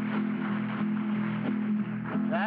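Steady hiss with a low electrical hum, the background noise of an old television recording, before the music begins.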